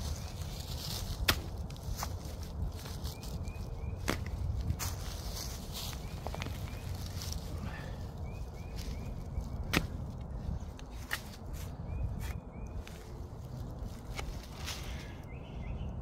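Cold Steel BMFDS steel shovel blade digging into leaf litter and soil, with irregular sharp chops and scrapes as the blade bites in and lifts dirt.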